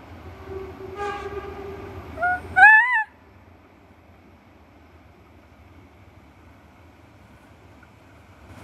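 Whistle of the Harz narrow-gauge steam locomotive 99 7243 sounding in the distance: one steady note lasting about a second and a half. It is followed at once by a much louder, wavering hoot close to the microphone, and then only faint steady background noise.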